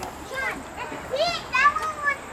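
A young child's voice: a few short, high-pitched vocal sounds, with adult speech around them.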